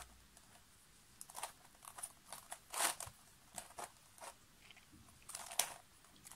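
Turning the plastic layers of a 3D-printed Axis Megaminx puzzle by hand. It gives an irregular run of short, soft clicks and scrapes, loudest about three seconds in.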